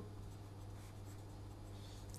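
Faint scratching of a felt-tip marker writing on paper, over a low steady hum.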